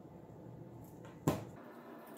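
A single short knock about a second in, a glue stick set down on the hard tabletop, over faint handling of paper strips.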